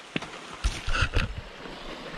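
A few heavy footfalls of rubber waders as a person steps out of a shallow creek, over the steady sound of the flowing creek.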